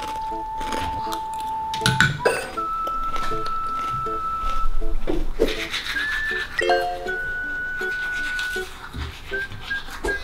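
Light, playful background music: long held melody notes stepping between pitches over a regular pattern of short, soft accompanying notes.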